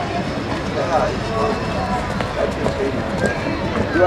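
People talking indistinctly over steady outdoor background noise.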